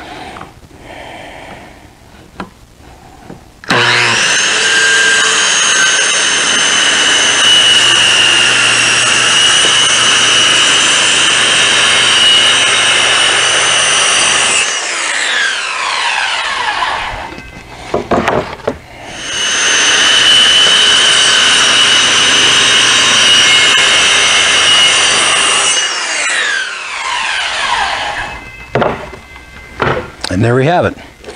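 Circular saw cutting a long board in two passes. It spins up about four seconds in and runs steadily under load for about ten seconds, then winds down with a falling whine. A second cut starts just before twenty seconds and winds down again after about twenty-six seconds.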